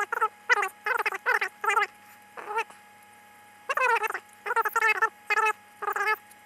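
Plastic fletching vanes being shaved and stripped off a carbon arrow shaft: a run of short, squeaky rasping strokes with a brief pause midway, then a longer stroke.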